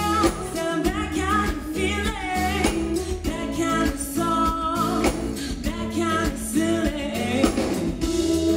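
A woman singing a pop song live into a handheld microphone, over amplified band accompaniment that holds steady low notes beneath her voice.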